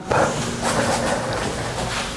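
A long audible inhale close to the microphone: a steady breathy hiss lasting about two seconds.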